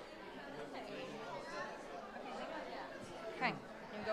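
A congregation chatting as people greet each other: a babble of many overlapping voices, with one voice briefly rising louder near the end.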